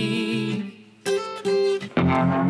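Music: guitar notes ring on and fade to a brief near-silence under a second in, then two strummed guitar chords about half a second apart, before the band comes back in at the end.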